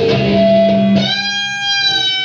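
Dean electric guitar played lead through a Marshall amplifier: held single notes, with a new, bright note struck about a second in and sustained.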